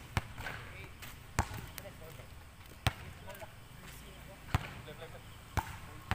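Basketball bouncing on an outdoor concrete court: five sharp slaps at irregular intervals, with faint voices in between.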